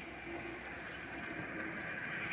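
Steady outdoor background noise, a constant even hiss, in a pause between a man's words.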